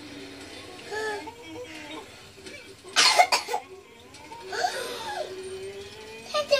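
Animated-film soundtrack playing from a television: music and gliding cartoon voices, with a short loud outburst about three seconds in.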